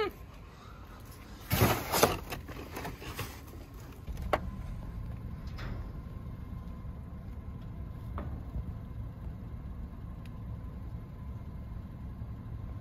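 Cardboard rustling and scraping as it is handled in a dumpster, loudest about two seconds in. After a click about four seconds in, a steady low rumble of a car running, heard from inside the car with its door open, with a few faint clicks.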